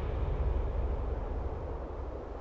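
A low, deep rumble slowly dying away.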